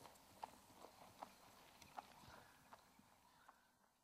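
Faint hoofbeats of a 3-year-old Hanoverian horse moving under a rider across a grass field, an uneven run of soft clicks a few times a second that grows fainter and fades out toward the end.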